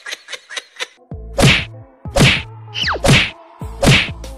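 Four loud whack-type punch sound effects about 0.8 s apart, laid over a low bass tone, with a falling cartoon whistle between the second and third. In the first second, the tail of a quick run of pulses from the previous clip fades out.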